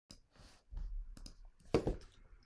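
Scattered short clicks and knocks, with a low rumble about a second in and the loudest click near the end.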